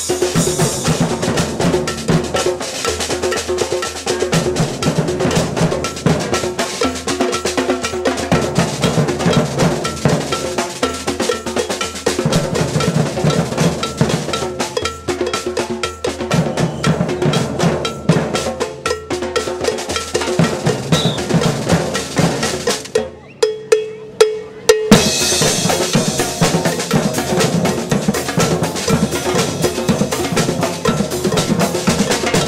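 Street percussion band drumming a fast, steady rhythm on drums and cymbals, including metal-shelled samba drums. About 23 seconds in the groove breaks off for a second or two with a few single hits, then the full band comes back in louder.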